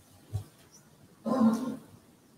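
A brief low thump, then about a second in a short, rough vocal sound from a person, like a throat being cleared.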